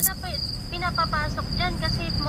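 Insects chirping outdoors: a high, thin trill that comes in short, regular pulses, a few a second, under faint conversation.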